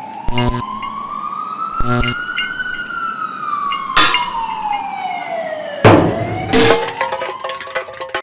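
Siren wailing in slow sweeps: it rises for about two and a half seconds, falls for about three, then starts rising again. Several sharp hits land across it, the loudest about six seconds in.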